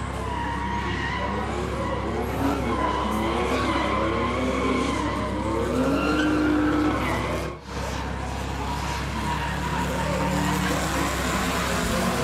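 Drift cars sliding through a corner: engines revving hard under load, pitch rising and falling, with tyres skidding on the tarmac. The sound cuts briefly about two-thirds of the way through, then carries on.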